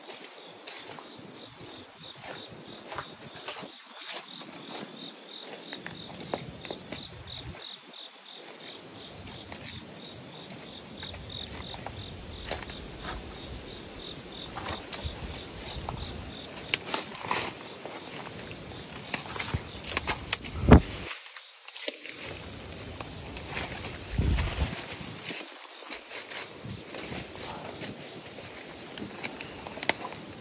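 Footsteps crunching through wet fallen leaves and brush, with twigs and branches crackling, and one loud knock about two-thirds of the way through. An insect chirps in even pulses through the first half.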